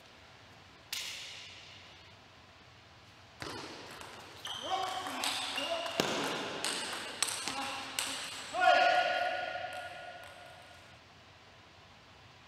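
Table tennis ball clicking off bats and table in a reverberant hall, a few single hits early on, then a busy rally mixed with shouting voices, the loudest a long shout about three-quarters of the way in.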